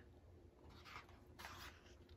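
Faint rustle of a paper picture-book page being turned, twice briefly, in near silence.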